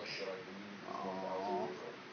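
A short laugh from a man, then a cat gives a drawn-out, wavering meow for about a second.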